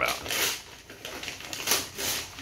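Gift wrapping paper being torn off a box in several short rips and crinkles, with the loudest rip near the end.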